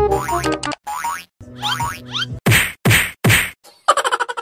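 Edited-in comedy sound effects: short quick gliding tones in the first half, then three loud whacks about 0.4 s apart.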